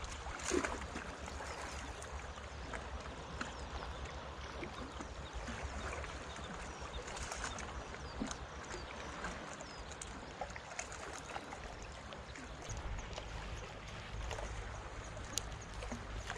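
Calm sea water gently lapping and gurgling among rocks at the water's edge, with small scattered ticks and a low wind rumble on the microphone that grows stronger near the end. A brief knock about half a second in.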